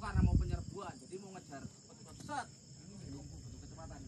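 A steady, high-pitched insect drone, with scattered voices of soldiers talking over it.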